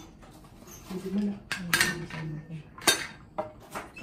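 A silicone spatula scraping and knocking against a stainless steel pot as boiled penne is tipped out into a plastic bowl. A few sharp knocks stand out, the loudest about two and three seconds in.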